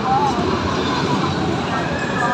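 Steady din of an indoor theme park: many voices in the hall over the running noise of the rides.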